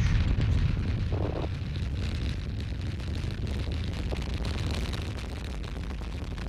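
Space Shuttle launch roar: the solid rocket boosters and three main engines at full thrust just after liftoff, a deep, dense rumble that slowly grows fainter as the vehicle climbs away.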